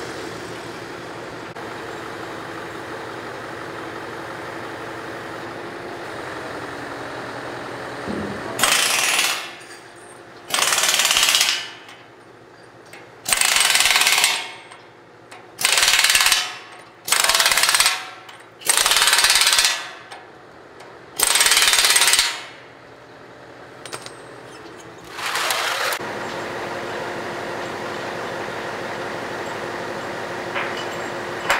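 Pneumatic impact wrench tightening the bolts of a steel ride beam, in about eight short hammering runs of a second or so each, over a steady engine hum that runs before and after them.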